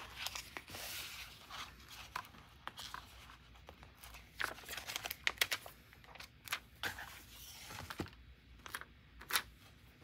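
A large layered sticker being peeled off its glossy backing sheet: irregular crackling and small ticks as the adhesive lets go, with the paper and sticker handled throughout.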